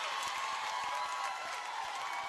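Concert audience applauding and cheering: a dense, steady wash of clapping with scattered shouts.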